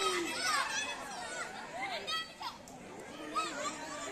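Children's voices shouting and calling, many short overlapping calls at a low, distant level, with one brief higher-pitched shout about two seconds in.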